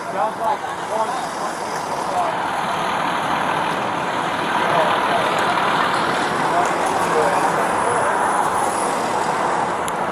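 Steady engine and traffic noise from idling fire trucks and road vehicles around the scene, with faint voices in the background.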